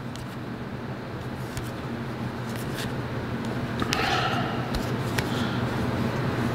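Glossy trading cards being slid off a stack one at a time, giving faint short flicks and a soft rustle about four seconds in, over a steady low hum.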